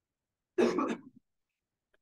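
A man's single short cough, clearing his throat, about half a second in.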